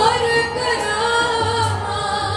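Sikh kirtan: several voices singing a Gurbani hymn line together over harmonium accompaniment, with tabla. Deep bass strokes of the tabla come back in near the end.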